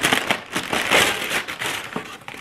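Brown paper fast-food bag crinkling and rustling as it is handled and pulled open.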